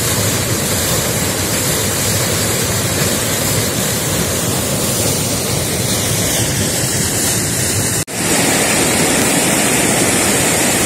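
Small waterfall and rapid on a forest river, water pouring over a granite ledge: a loud, steady rush. It drops out for an instant about eight seconds in, then carries on slightly brighter.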